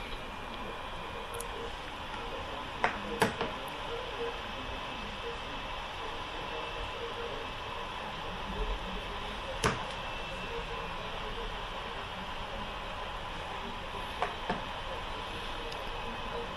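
Steady road and tyre noise heard inside a car cabin at highway speed, around 100 km/h, with a few faint short clicks.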